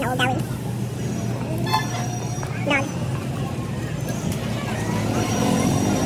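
Steady low hum of a car's engine and road noise heard from inside the cabin while driving slowly through a crowded street, with the street's traffic and voices around it.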